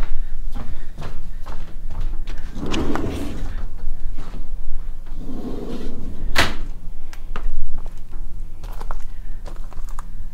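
A person walking out through a door while holding a phone: footsteps, knocks and handling rub on the microphone, with a sharp knock about six and a half seconds in and a steady low hum underneath.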